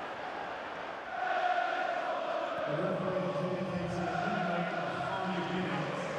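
Football stadium crowd singing a chant together, the massed voices swelling up about a second in and holding long, sustained notes over a background of crowd noise.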